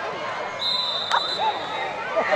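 Referee's whistle blown once, a steady shrill tone held for just over a second, signalling the play dead after a touchdown. Voices of players and spectators shouting throughout, with one sharp smack about a second in.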